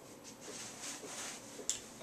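Faint rustling from hands handling the props, with one short sharp click near the end.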